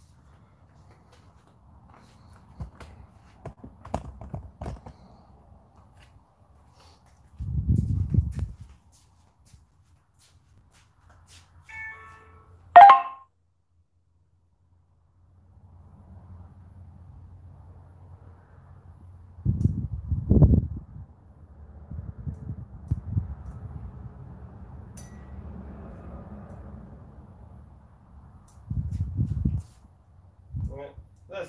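Handling knocks and rustles on a phone's microphone as the phone is moved and set down, with scattered low thumps. About 13 s in comes one sharp, ringing ding, the loudest sound, over in well under a second.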